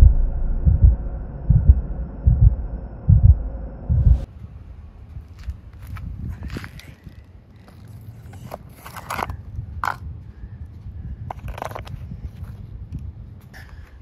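Cordless rotary hammer drilling into asphalt, its motor running in surges a little under a second apart, then stopping about four seconds in. After that come scattered scrapes and clicks as a plastic in-ground parking sensor is pushed into the drilled hole.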